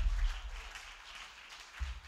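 Congregation clapping briefly, the applause fading away over the first second and a half, with a low rumble under it at the start.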